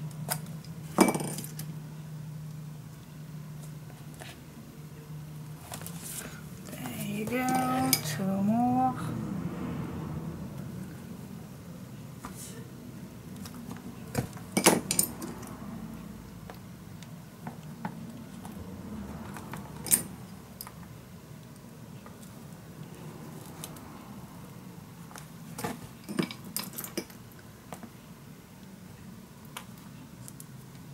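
Small metal clicks and clinks of brass brads being handled, pushed through punched holes in a chipboard album spine and pressed into place by hand. There are a few sharper taps, the loudest about a second in and around fifteen and twenty seconds.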